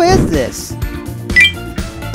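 Quiz sound effects over background music: a gliding pitched sound at the start, then a short bright click-and-chime about one and a half seconds in.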